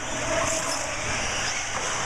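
Several 1/8-scale off-road RC buggies racing on a dirt track: a steady wash of motor and running noise with faint high whines.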